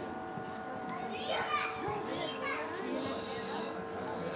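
Children's voices from the crowd, with two bursts of shrill, high squealing calls in the middle, over general chatter and a steady hum.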